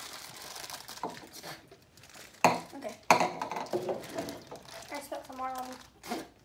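Small candies rattling in cardboard tubes as they are tipped to the mouth, with wrapper crinkling, two sharp knocks about two and a half and three seconds in, and short vocal sounds from the children, including a brief held hum near the end.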